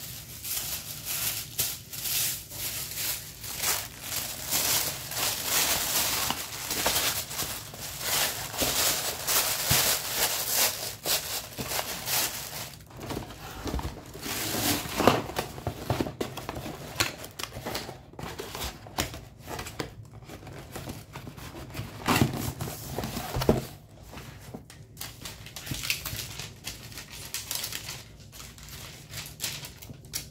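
Tissue paper rustling and crinkling as it is folded over the contents of a box, then a cardboard mailer box being closed and handled, with a few sharp knocks and taps.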